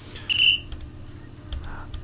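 A short, steady, high whistling tone, under half a second long, over a faint breathy hiss, followed by a few faint clicks.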